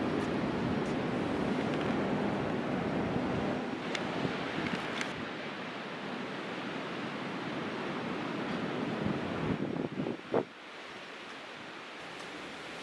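Steady outdoor wind and ocean surf noise, thinning near the end, with a short knock about ten seconds in.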